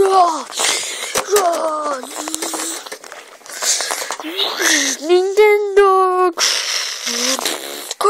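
A high-pitched human voice making wordless sounds: gliding calls and cries broken up by breathy hisses and puffs, with one longer wavering held cry about five seconds in. A few short knocks sound in the first second and a half.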